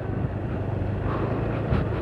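Motorcycle engine running steadily at low speed on a dirt track, with some wind noise on the microphone.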